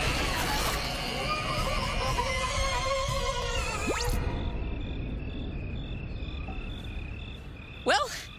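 Cartoon sci-fi ray-beam sound effects and electronic score: a dense warbling electronic drone, a sharp rising zip about halfway through, then a high two-note electronic pulse alternating evenly.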